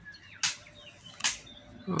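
Birds chirping faintly, with two short hissing bursts about half a second and a second and a quarter in.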